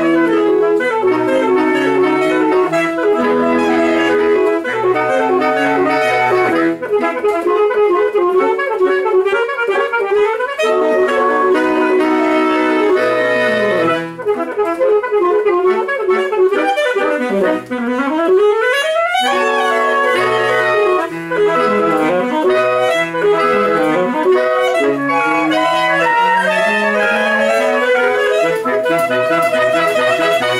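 Saxophone quintet playing a piece in several parts, sustained notes moving together over a lower line. About two-thirds of the way in there is a quick run sweeping down and then up high.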